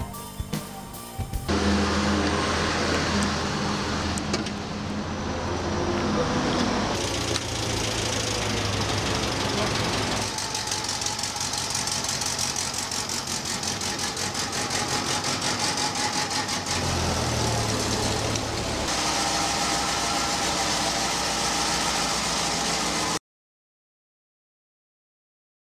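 NSU Kettenkrad tracked motorcycle running, its Opel four-cylinder engine giving a steady low drone, in several cut-together passages, with a fast even rattle in the middle passage; the sound cuts off abruptly about a second before the end.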